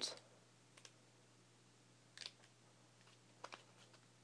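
Near silence, with a few faint short clicks from the paper pages of a small booklet being handled and turned, over a faint low hum.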